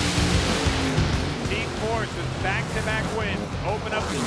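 Rock music with a steady bass line, with a burst of race-car engine noise in the first second or so. A voice speaks over the music from about halfway through.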